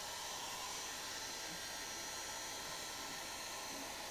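Electric heat gun running: its fan blows a steady, even rush of air with a faint hum.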